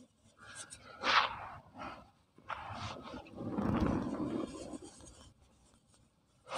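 Soft, dry pure cement blocks being crushed and crumbling into powder, in several separate crunches: a sharp one about a second in, smaller ones after it, and a longer, lower crunch around four seconds in, then a pause near the end.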